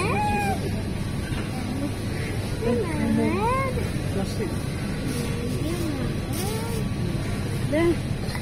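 A young child's voice making long wordless, meow-like whining calls that swoop down and back up in pitch, four times, over a steady background hum of shop noise.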